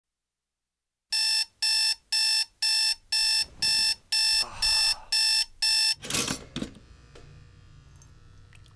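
Digital alarm clock beeping: ten short electronic beeps, about two per second, starting about a second in and stopping about six seconds in, followed by a brief noisy rustle.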